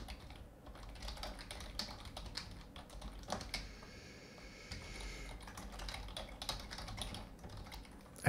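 Computer keyboard being typed on: quick, irregular, faint keystrokes, with a soft hiss for a second or so midway.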